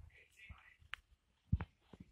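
A dwarf hamster gnawing an unshelled peanut: soft, scratchy crunching of the shell with a sharp click about a second in and a couple of low knocks soon after.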